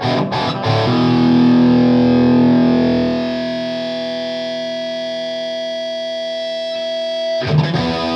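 Distorted electric guitar through a modified Marshall JMP 2203 100-watt valve head (SS mod) and Marshall cabinet: a few quick chord stabs, then one chord left ringing with long sustain, its low end thinning out about halfway through. The chord is muted abruptly near the end and new playing begins.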